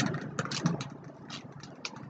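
Aerosol primer can being shaken: a few faint, irregular clicks of the mixing ball rattling inside.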